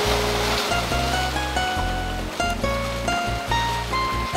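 Background music, a melody of short notes over low bass notes, with the rush of surf washing through rocks mixed in, loudest in the first second.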